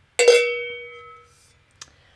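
A cowbell struck once by a tasting glass in a "cowbell cheers" toast, ringing and fading away over about a second. A faint click follows near the end.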